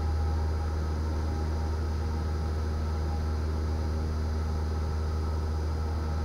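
Cessna 172's piston engine and propeller in flight, a steady low drone that does not change, heard in the cockpit audio.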